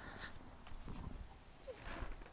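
Faint shuffling movement as a person settles into a folding fabric camp chair, with a brief faint squeak near the end.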